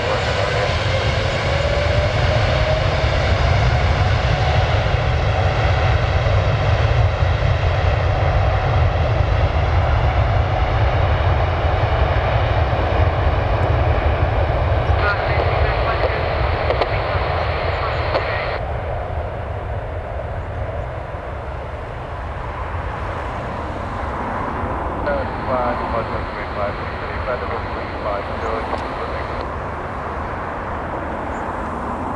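Airbus A330 twin-jet airliner's engines spooling up for takeoff, a whine rising over the first few seconds under a deep rumble. It settles into a steady loud roar as the jet rolls down the runway, then fades as it draws away.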